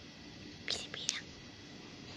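A quiet, brief whispered voice: two short, breathy hissing sounds close together about a second in.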